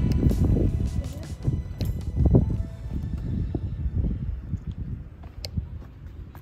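Wind buffeting the microphone in a loud low rumble that eases over the second half, with a few sharp clicks near the end.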